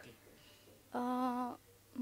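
A young woman's voice humming a single steady note for about half a second, about a second in, as she warms up to sing.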